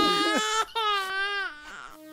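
A high-pitched voice crying out in two drawn-out wails, the second falling in pitch as it ends.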